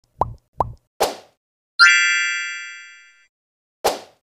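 Cartoon sound effects for an animated intro: two quick pops, a third sharp pop about a second in, then a bright bell-like chime that rings out and fades over about a second and a half, and one more pop near the end.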